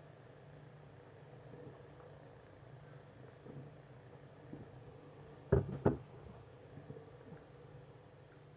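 A stemmed glass chalice set down on a countertop: two short knocks close together about five and a half seconds in, over quiet room tone.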